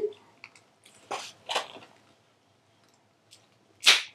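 Crimson acrylic paint squeezed from a tube into a measuring spoon: two short, soft spurts about a second in, a louder sharp one near the end, and a few faint clicks of the tube and spoon being handled.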